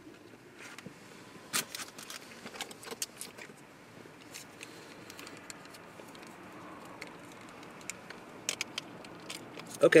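Close-up chewing of a crunchy waffle taco: scattered crisp clicks and crackles, one cluster in the first few seconds and another near the end.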